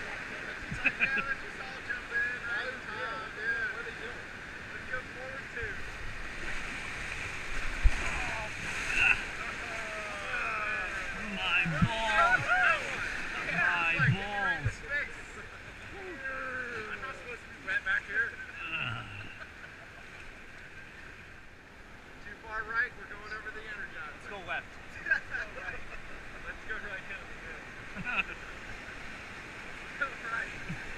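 Whitewater rapids rushing steadily around an inflatable raft, with people's voices shouting and calling over the water in bursts, most of them about ten to fifteen seconds in.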